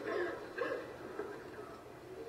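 Faint voices in a room, dying away after about a second into quiet room sound.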